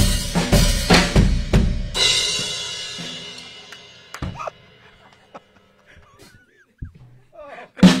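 Fast drum-kit fill on snare, toms and bass drum, ending about two seconds in on a cymbal crash that rings out and fades. One more drum hit follows about four seconds in.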